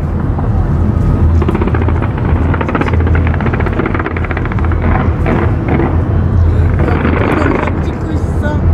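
Fireworks display going off continuously: a heavy low rumble of bursting shells, with a dense run of crackling from about two to four seconds in.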